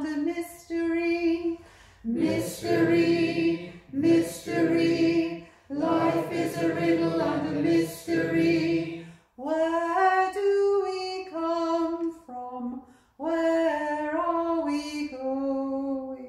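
Unaccompanied singing of a short chant in phrases a few seconds long with brief breaks between them. A woman's voice leads, and a small group of mixed voices sings with her, fullest in the first half; later phrases are a thinner single line.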